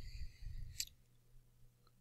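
A single sharp computer mouse click about a second in, over a steady low hum in otherwise quiet room tone.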